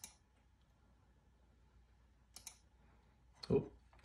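A few sharp clicks from a computer as the pages of an on-screen document are flipped: one at the start and a quick double click about two and a half seconds in. A short spoken "oh" comes near the end.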